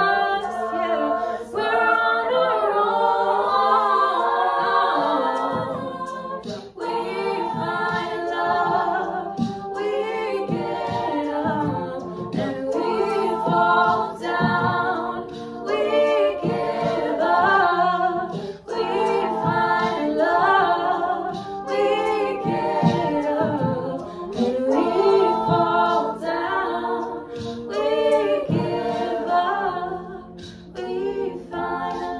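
A cappella ensemble singing: a female soloist leads over a group of voices holding sustained chords and a low line beneath, with no instruments.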